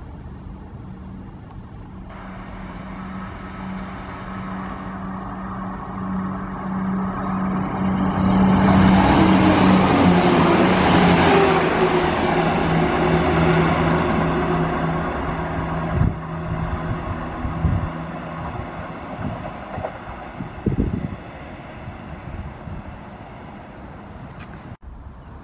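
ScotRail Class 170 Turbostar diesel multiple unit passing: the steady hum of its underfloor diesel engines grows louder to a peak about ten seconds in, as the cars rush by, then fades away. A few sharp knocks come as the last of the train goes past.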